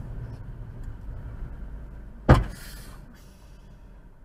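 Low, steady rumble of a car's cabin in slow traffic. Just over two seconds in comes a single loud sudden thump, followed by a short hiss that fades out within about half a second.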